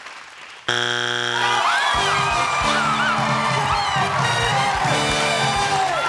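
Game-show wrong-answer buzzer blares about a second in for under a second, signalling that the answer is not on the board and counts as a strike. Upbeat theme music with a steady drum beat follows, over whoops and cheering.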